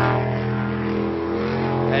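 Jet sprint boat's supercharged 6.2-litre LSA V8 running steadily as the boat races through the course, a continuous engine drone with a brief waver in its note just over a second in.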